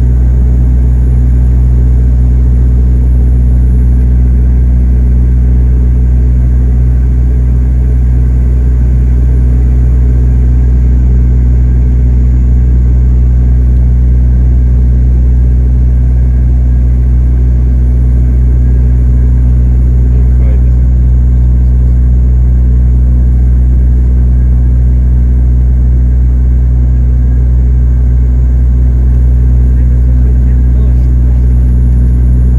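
Steady, loud drone of a turboprop airliner's engines and propellers heard inside the passenger cabin in cruise, a deep even hum that does not change.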